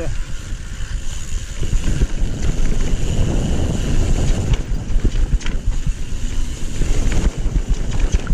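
Wind buffeting a GoPro Session 5's microphone, mixed with the rumble and rattle of a Nukeproof Reactor 27.5 downhill mountain bike's tyres and frame over rough dirt trail at speed. Irregular knocks come from bumps.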